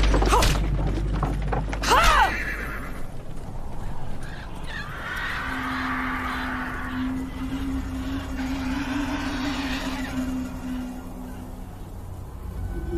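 A horse whinnies about two seconds in, over a low rumble that dies away soon after. It is followed by a steady low held tone under a windy hiss that fades near the end.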